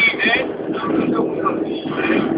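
Mazda 323 1.5 16V's four-cylinder engine at high speed, about 160 km/h, heard inside the cabin as a steady drone with road noise, with a voice over it.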